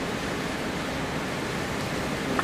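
Steady even hiss of background room noise, with no distinct sound in it.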